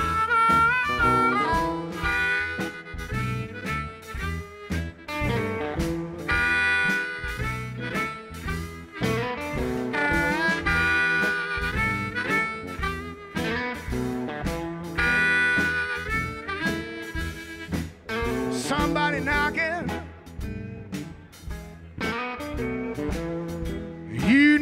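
Live electric blues band playing an instrumental passage: amplified harmonica leads with held and bent notes over electric guitar, bass and drums.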